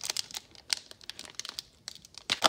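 A Pokémon Trading Card Game booster pack's foil wrapper crinkling as it is torn open by hand: a quick, irregular run of sharp crackles.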